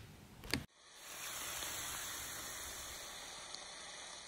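A steady hiss from a logo-animation sound effect of a brand being burned into wood, starting about a second in and slowly dying away.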